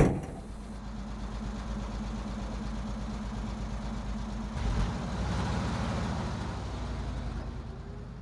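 Old Soviet ZIL-130 dump truck's V8 engine running steadily. It opens with a sharp knock as the cab door is slammed, and about four and a half seconds in the engine gets louder as it is given more throttle.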